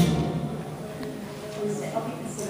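A choir and its keyboard accompaniment fade away at the end of a phrase, leaving faint held notes ringing in the hall before the next phrase.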